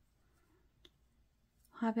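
Quiet handling of a metal crochet hook and yarn, with one short faint click a little under a second in; a woman starts speaking near the end.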